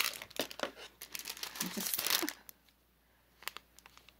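Clear plastic packaging bag crinkling as it is handled, a dense run of crackles for about two and a half seconds, then a few faint separate clicks.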